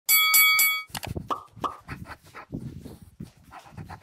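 A bell rung three times in quick succession, with a clear metallic ring. It is followed by a run of short, sharp sounds from shadow boxing: quick exhales with the punches and scuffs of footwork.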